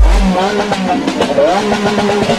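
Car engine revving sample in a bass-boosted trap track. It opens on a deep bass hit, then the engine's pitch wavers up and down.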